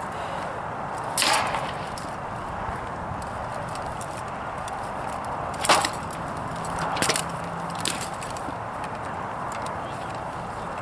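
Rattan swords of SCA armored fighters striking shields and armor in a sparring bout: several sharp knocks, the loudest a little before six seconds in, with a quick pair around seven seconds, over a steady background hiss.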